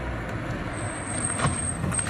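Street traffic noise from a motor vehicle, steady and even, with a thin high whine through the second half and a short knock near the end.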